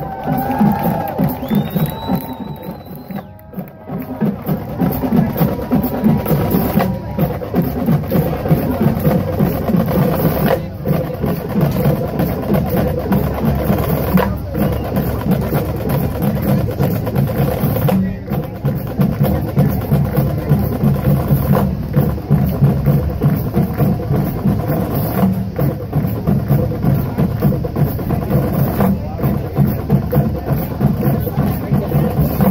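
Crowd cheering and whooping for the first few seconds, then a marching band drumline playing a steady cadence on snare and bass drums, with sharp clicking hits, from about four seconds in.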